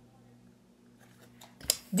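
Near silence with a faint steady hum, then near the end a few short papery clicks and rustles of a picture flashcard being handled and held up.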